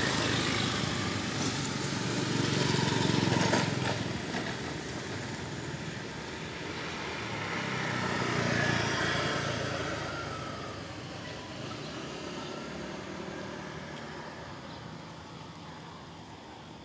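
Engine noise from motor vehicles off camera, swelling to a peak about three seconds in and again about eight seconds in, then fading.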